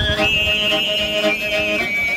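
Mongolian throat singing (khöömii) with a bowed morin khuur (horsehead fiddle): a high, whistle-like overtone melody sustained over a low drone, stepping down in pitch in small slides.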